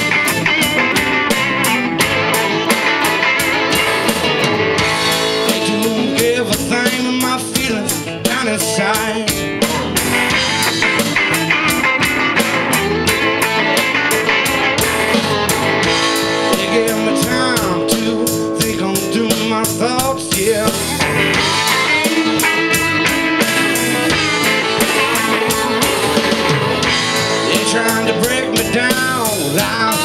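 Live rock band playing: several electric guitars over a drum kit, running steadily throughout.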